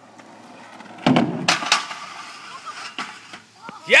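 Skateboard wheels rolling on concrete, growing louder, then the board comes down with a loud clack about a second in, followed by two more knocks and the wheels rolling on with a few small clicks.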